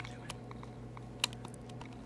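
Faint, irregular sharp clicks over a low steady hum, the loudest about a second and a quarter in.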